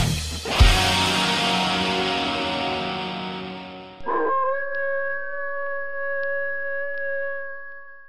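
Outro music ends on one last hit, and its chord fades out. About four seconds in, a single long wolf howl starts suddenly, holds one steady pitch and fades at the end.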